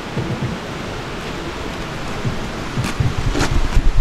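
Steady rushing outdoor noise with no words. Near the end come a few light knocks and a low rumble, as long bundles of steel framing are carried close past.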